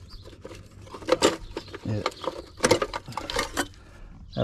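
Spare tractor parts being rummaged in a box: tail-light lenses and fittings clinking and knocking against each other, with plastic wrapping rustling. The sharpest clinks come about a second in and again near the three-second mark.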